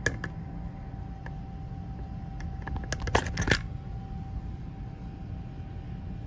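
Hands handling console parts on a workbench: scattered light clicks and knocks, with a louder cluster of clinks about three seconds in, over a faint steady hum.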